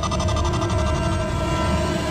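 Suspenseful dramatic background score: held tones over a low rumble.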